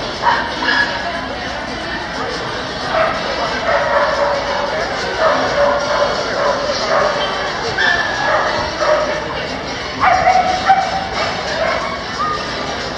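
Dogs barking again and again, in short bursts, over people's background chatter.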